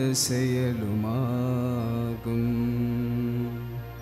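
A man's voice intoning a liturgical prayer through a microphone, sliding between notes and then holding one long note, over a steady low drone.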